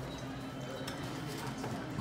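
A few light clinks and taps of a glass bottle and a metal jigger against a metal cocktail shaker tin as liqueur is measured out and tipped in.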